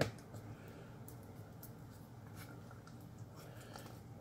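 A wooden spatula scraping and squishing thick wet dog food out of a metal can: quiet scrapes with a few light clicks. Beneath it, a faint steady hiss from rice sizzling in a pan.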